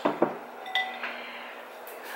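White ceramic soup spoon clinking against a porcelain bowl: about four light clinks in the first second, one with a short ring.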